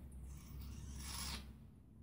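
A faint, airy hiss of breath at the mouth as a man takes a sip of white wine, lasting about a second and dying away before the halfway mark.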